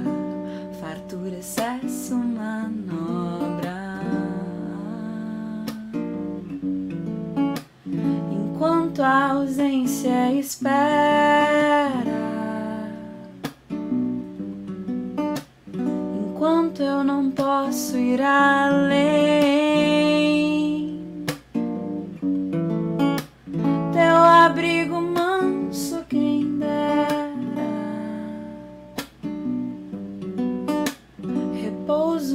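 A woman singing to her own strummed acoustic guitar, with long held sung notes about a third of the way in and again past the middle.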